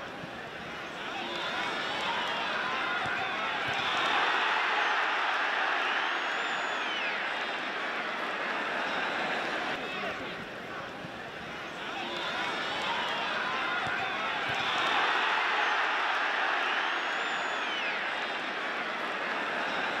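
Football stadium crowd noise: a steady din of many voices that swells twice and eases off again.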